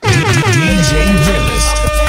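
DJ air-horn sound effect dropped in as the track cuts out: a loud, many-toned blast that swoops down in pitch and then holds steady, with a voice under it.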